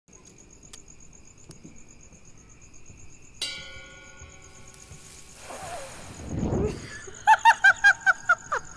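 Sound effects for a pencil-drawn cartoon. A faint, fast, high chirping like insects runs under everything. About three and a half seconds in, a bell-like chime is struck once and rings for about two seconds. Then comes a whooshing swell with a low rumble, and near the end a quick run of about five loud, short, squeaky cries like giggling.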